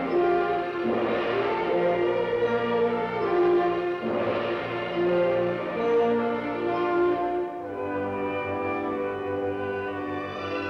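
Orchestral title music, a melody carried in long held notes. About seven and a half seconds in it thins out and turns quieter and softer.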